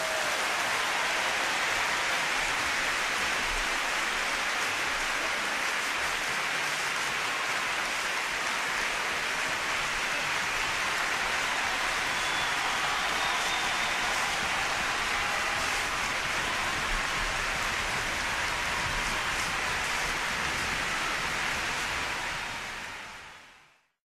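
Large audience applauding: a steady, dense clatter of many hands clapping that fades out near the end.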